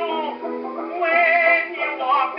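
A 1923 acoustic-era 78 rpm fox-trot record of a dance orchestra, played on a portable phonograph. The sound is thin, with no deep bass and no high treble, and a wavering melody line sits over the band.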